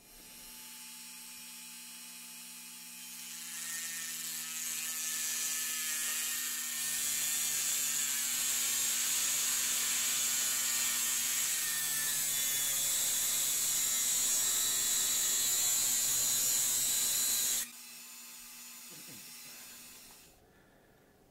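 Rotary tool with a thin cutoff disc spinning, then cutting through a 1:64 diecast toy car body from about three seconds in: a steady motor whine with a loud, high grinding hiss over it. The grinding stops suddenly near the end as the cut goes through, and the tool keeps spinning freely.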